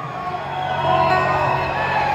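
Soft live band backing, a resonator guitar and upright bass holding a low chord, with a few whoops from the crowd.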